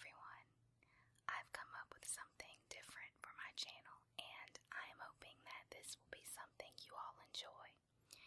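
Soft whispered speech with small clicks between words, over a faint steady low hum.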